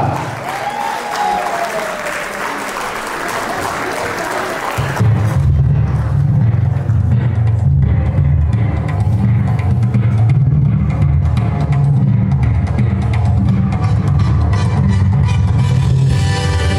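Audience applause for about five seconds. Then dance music with a heavy, steady drum beat starts: the opening of a Caucasian dance medley.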